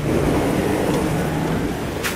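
Wind buffeting an outdoor microphone: a loud, steady rushing rumble that eases slightly toward the end.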